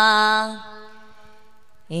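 A man singing devotional naat in a chant-like style, holding one long note that fades out about half a second in. After a short lull, a new, lower note begins at the very end.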